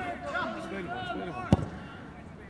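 A football kicked hard in a shot at goal: one sharp thud about one and a half seconds in, after players' voices calling.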